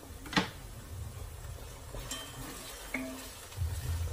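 Meat frying in a pot with a faint sizzle, and a sharp knock about half a second in. Near the end a wooden spoon stirs the pot.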